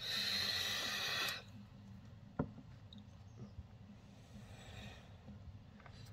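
A man's long breathy sigh lasting about a second and a half, followed about a second later by a single light click, then quiet room tone.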